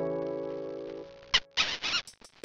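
A held, guitar-like chord of background music fading away over the first second, followed by a short sharp squeak and a brief noisy burst near the end.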